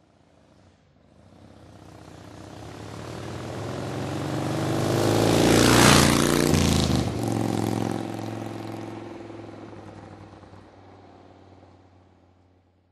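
A road vehicle driving past. It grows steadily louder to a peak about halfway through, drops in pitch as it passes, then fades away.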